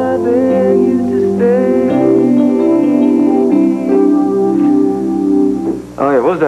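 Guitar music: a plucked guitar playing a steady run of repeated notes, with held higher notes over it.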